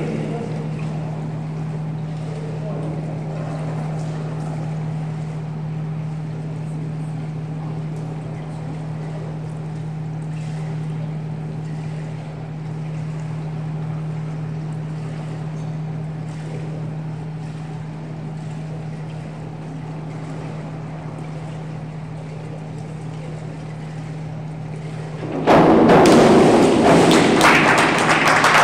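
Steady low hum with a faint background murmur while a diver waits on the springboard. About 25 seconds in, as she goes into the water, loud applause and cheering break out and carry on to the end.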